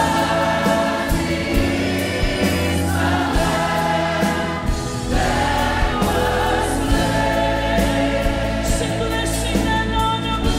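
Gospel worship music: a choir singing long held notes over instrumental backing with a steady bass line.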